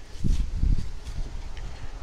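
Low, uneven rumble of wind and handling noise on the microphone, with no distinct knock or creak.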